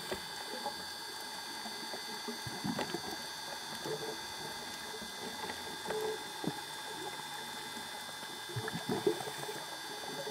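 Underwater ambience picked up through a dive camera's housing: scattered clicks and pops over a steady thin whine, with short louder bursts about a quarter of the way in, around six seconds, and near the end.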